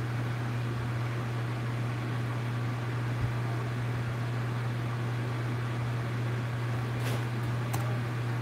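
Ceiling fan running: a steady low hum with an even hiss, with a couple of faint clicks near the end.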